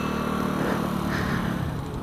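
A 125cc scooter's small engine running steadily while riding at low speed, a steady hum under wind and road noise on the handlebar-mounted microphone.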